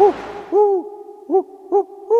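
Owl-like hooting: four short, arched hoots on much the same pitch, the second a little longer, spaced about half a second apart. A rushing-water hiss stops about half a second in.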